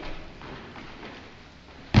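Feet scuffing on a wooden dance floor during a swing-dance aerial, ending in one loud thud near the end as the thrown dancer lands.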